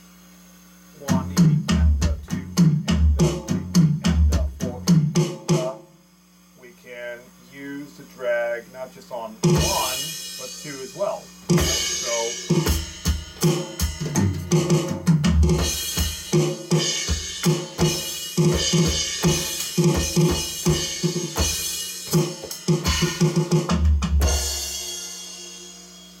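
Electronic drum kit played with sticks through its amplifier: a short run of snare and tom hits over the bass drum, a brief gap, then a long stretch of fills using drags (two ghost notes before an accent) that land on cymbal crashes. The last crash dies away near the end. A steady electrical hum sits underneath.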